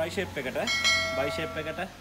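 A bell-like notification chime sound effect from the subscribe-button animation: one steady ringing tone starting about two-thirds of a second in and lasting just over a second, over a man's talking.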